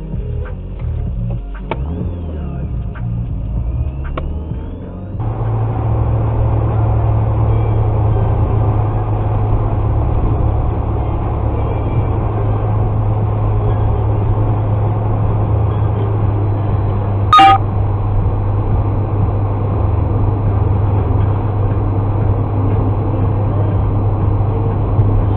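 Dashcam recording inside a car: a quieter patch while the car waits at a light, then steady engine and road noise with a low hum once it is driving. About 17 seconds in there is one short, loud tonal sound.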